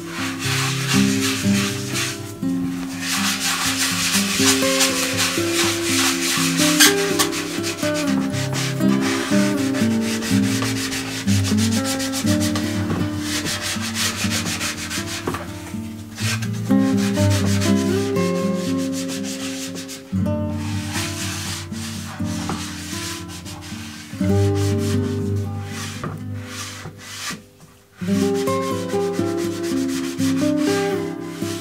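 A gloved hand rubbing oil finish into a turned silver birch platter with a pad, a continuous scratchy scrubbing over the wood, over background music. The scrubbing stops for a moment about two-thirds of the way through and again shortly before the end.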